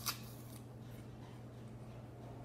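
A crisp bite into a raw apple right at the start, one sharp crunch, followed by faint chewing, over a steady low hum.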